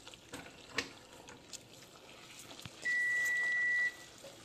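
Faint bubbling of hot sugar syrup with a few light clicks of a wooden skewer in a stainless pot. About three seconds in, a single steady high electronic beep sounds for about a second.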